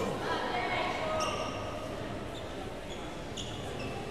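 Sports shoes squeaking on an indoor badminton court during a doubles rally, several short high squeaks, over a steady murmur of spectators' voices echoing in the hall.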